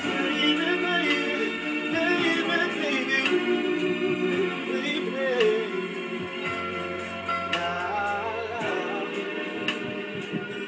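Slow soul ballad backing track playing, with a man's voice singing wordless, gliding runs over it.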